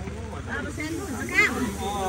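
People talking over a steady hiss of falling rain.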